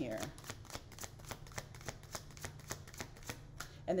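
A tarot deck being shuffled by hand, cards slapping and sliding over each other in a fast, even run of light clicks.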